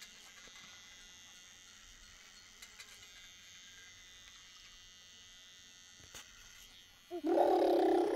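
A quiet stretch with only a faint steady background, then, about seven seconds in, a loud drawn-out call that holds its pitch for about a second and a half.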